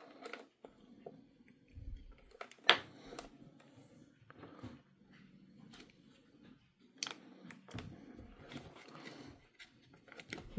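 Scattered small clicks and light rattles of alligator-clip leads and battery connectors being handled and reconnected on a wooden bench. The sharpest clicks come about two and a half seconds in and again about seven seconds in.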